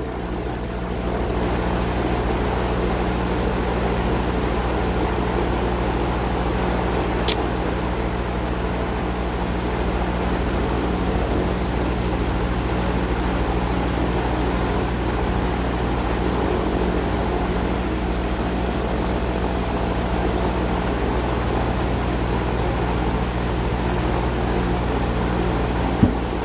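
50W CO2 laser engraver-cutter running a cutting pass at 60% laser power around an engraved wooden board: a steady mechanical hum and whir. There is one sharp tick about seven seconds in.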